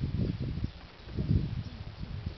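Wind buffeting a compact camera's built-in microphone, coming as uneven low rumbling gusts, with two strong swells, one at the start and one a little past the middle.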